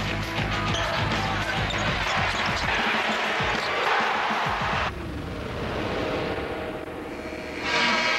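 Television broadcast bumper: music over a montage of basketball game sounds. The sound changes suddenly about five seconds in, and a louder passage starts near the end.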